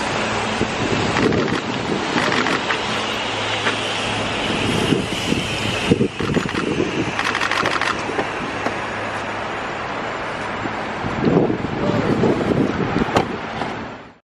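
Wet city street noise: traffic on slick pavement and wind buffeting the microphone, under a low steady hum, with indistinct voices and some louder jostling noise near the end.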